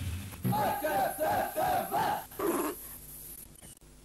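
A voice whooping: about five quick rising-and-falling calls in a row, then one lower shout.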